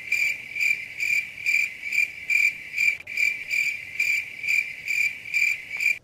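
Crickets chirping in a steady, regular trill, about two chirps a second, then cutting off abruptly: the stock sound effect for an awkward silence.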